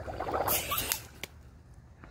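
A breath blown hard into the neck of a large water balloon, about a second long, followed by a single short click.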